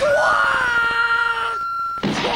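A cartoon rat's long, high-pitched scream: it rises at the start, holds one steady pitch, and breaks off about a second and a half in.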